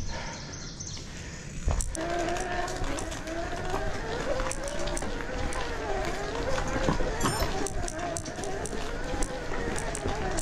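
Specialized S-Works Levo electric mountain bike rolling down a rocky singletrack: rumble and frequent knocks and rattles as the bike runs over rocks, with a wavering tone that rises and falls throughout.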